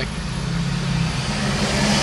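Car engine running, heard from inside the cabin as a steady low hum with a wash of road and cabin noise.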